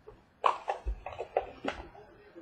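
Trading cards being handled on a table: a quick run of about six short taps and flicks as cards are lifted off a stack and set down, starting about half a second in.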